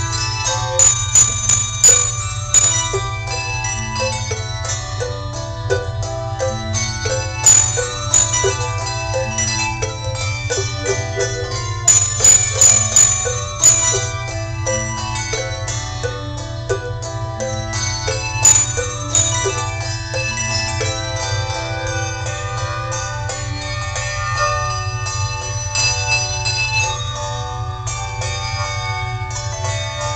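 Handbell choir ringing a tune in many held, overlapping bell tones, with clusters of sharp accented strikes every few seconds. A steady low hum runs underneath.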